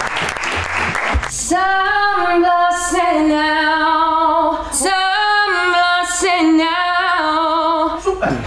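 A second and a half of clapping, then a woman singing unaccompanied. She holds long, steady notes in phrases, with short breaks between them.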